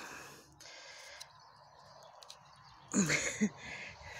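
A woman's breathy exhalation, then a short wordless voiced sound of effort about three seconds in, as she forces wire stakes into hard, dry soil, with a few faint clicks in between.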